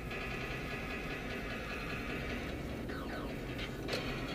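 Steady road and engine noise of a moving car, heard from inside the cabin as a low, even rumble, with a faint click near the end.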